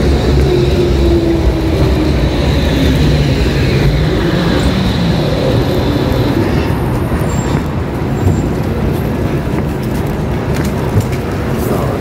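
City street traffic: a vehicle passing close by, a steady low rumble with a faint whine that falls slowly in pitch over the first few seconds.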